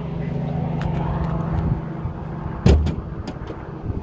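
BMW M5 Competition's twin-turbo V8 idling steadily, with a single sharp clunk about two-thirds of the way through.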